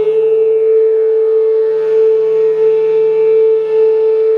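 Meditation flute music: a flute holds one long, steady note over a low, steady drone.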